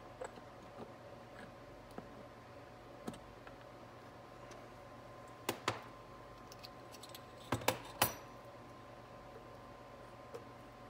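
Light clicks and taps of a transmission accumulator piston being pushed by hand into its bore in a 4L60E case. A few faint ticks come first, then a pair of sharper clicks a little past halfway and a cluster of three, the loudest, about three-quarters of the way through.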